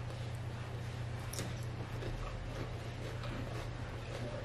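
A few faint crunches and clicks from biting into and chewing a raw cucumber slice, with the sharpest about a second and a half in, over a steady low hum.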